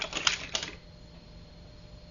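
Small toy cars being handled and set down, a quick flurry of plastic clicks and clatter in the first half-second or so.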